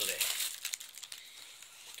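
Thin plastic bags crinkling as a bagged bunch of mandarin oranges is lifted out of the shopping, loudest in the first half second and then dying down.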